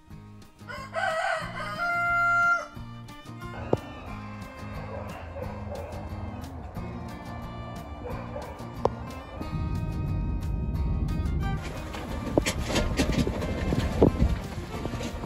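A rooster crows once, a long crow about a second in, over background music with a steady low bass line. A low rumbling noise comes in during the second half.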